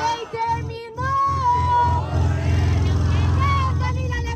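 A young woman rapping a freestyle verse into a handheld microphone through a PA, her voice half-sung, over a deep bass beat that runs steadily from about a second in.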